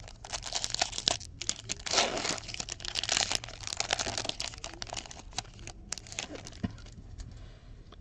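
The foil wrapper of a 2016-17 Fleer Showcase hockey card pack is torn open and crinkled by hand. The crackling is densest in the first few seconds, then thins out to a few scattered light clicks and rustles.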